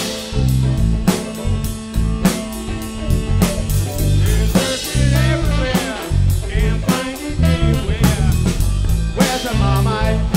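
Live blues-rock band playing an instrumental passage: drum kit keeping a steady beat under electric guitars and bass, with no singing.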